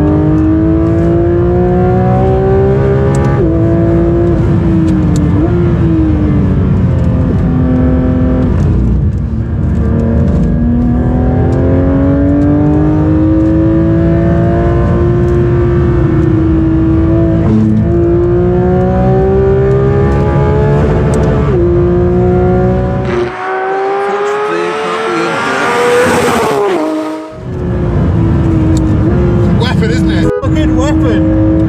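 Porsche 992 GT3 RS's naturally aspirated flat-six heard from inside the cabin at speed, the revs climbing and then dropping sharply with each gear change. Near the end the engine note briefly drops away under a burst of higher-pitched noise.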